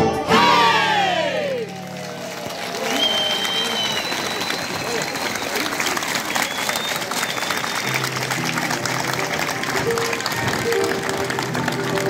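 Live band music ends with a falling sweep just at the start, then an audience applauds and cheers, with a couple of whistles a few seconds in. Sustained instrumental notes return faintly near the end under the clapping.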